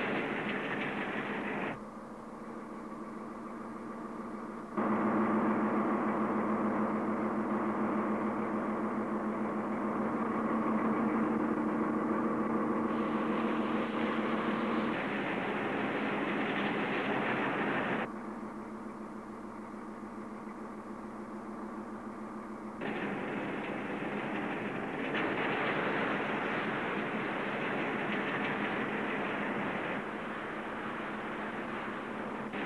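A ship pushing through fjord ice: a steady low engine hum, with rushing noise of broken ice and water along the hull. It comes in several spliced sections that change level and character abruptly, the hum strongest in the middle third.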